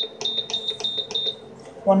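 Induction cooktop's control panel beeping rapidly as its Down button is held, about six or seven short high beeps a second, each beep one step of the power setting dropping from 2000 W toward its 120 W minimum. The beeping stops about one and a half seconds in.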